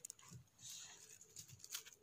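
Faint crackling and rustling of conifer needles, twigs and soil as a large bolete mushroom is pulled up by hand, with a soft scraping rustle about half a second in.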